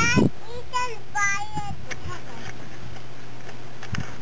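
Doberman puppies giving several short, high-pitched whines and squeals in the first two seconds, bending up and down in pitch; after that only a few faint clicks.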